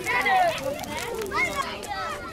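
Several children's voices calling and chattering over one another.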